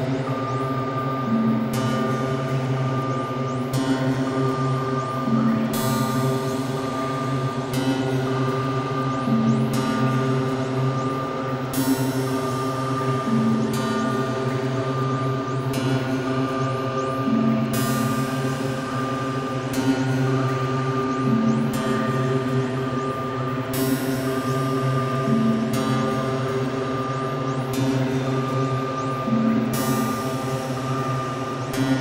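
Electronic soundscape from a VCV Rack software modular synth patch: a layered, sustained pitched drone. A short note figure and a bright swell in the highs recur about every four seconds.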